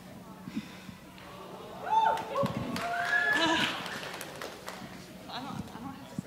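Several people's voices calling out in a gymnasium, with long cries that rise and fall in pitch about two seconds in, over light scattered clicks.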